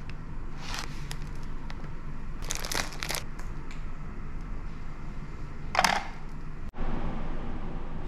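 Plastic amenity packets being handled and rummaged, crinkling in short bursts about a second in, around three seconds in, and loudest just before six seconds, over a steady low room hum. A brief dropout comes about seven seconds in, after which only the hum remains.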